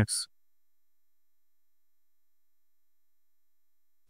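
Dead silence, broken only by the tail of a spoken word at the very start.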